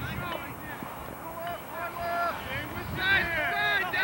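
Several people on and around a lacrosse field shouting indistinctly, their calls overlapping. The calls are loudest about three seconds in.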